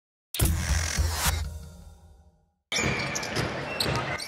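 Short Liga Endesa logo sting: a burst of deep bass thumps with a bright swish that fades out after about two seconds. Then the sound of a live basketball game cuts in suddenly: arena crowd noise with the ball being dribbled on the court.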